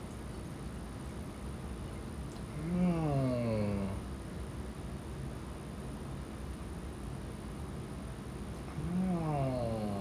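A person groaning in pain twice, each a drawn-out low 'oh' about a second long that rises briefly, then falls in pitch, from a hand hurt by a hot stove burner.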